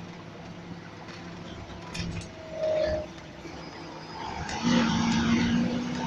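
Volvo B7RLE single-deck bus heard from inside the passenger saloon, its engine running steadily. Halfway through there is a short high tone. About four and a half seconds in it gets clearly louder, with a steady drone over a rushing noise, as the bus accelerates.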